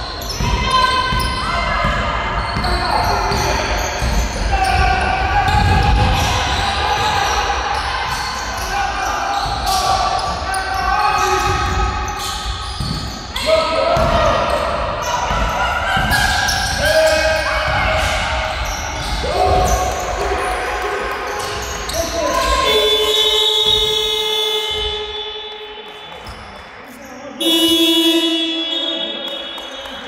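Basketball being dribbled on a hardwood gym floor amid players' and coaches' shouts, echoing in a large sports hall. Late on, a long steady tone sounds, then a second shorter one, as play stops.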